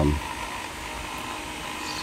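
Steady background hum and hiss with no distinct event, after a drawn-out spoken "um" that trails off at the start.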